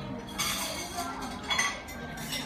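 Tableware clinking at a restaurant table, two short clinks, one about half a second in and one near the end, over low background chatter.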